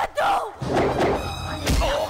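Film fight-scene soundtrack: punch and kick impact effects, with a heavy thud at the start and another near the end, over shouting voices and a background score.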